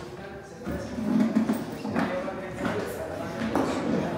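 A crowd of tourists talking over one another, voices indistinct, with no single speaker standing out.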